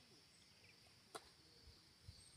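Near silence: faint outdoor ambience, with one short sharp click just after a second in.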